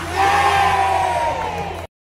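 A man's long, held whooping yell over crowd cheering; the sound cuts off abruptly near the end.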